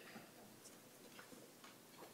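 Near silence: quiet room tone with a few faint, scattered ticks.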